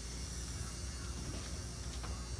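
Room tone: a steady low hum with an even hiss, and no distinct sounds.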